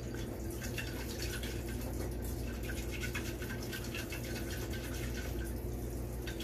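Neem oil, surfactant and water being swirled in a plastic bottle to work them into an emulsion: a steady, faint liquid swishing with small irregular splashes and ticks, over a constant low hum.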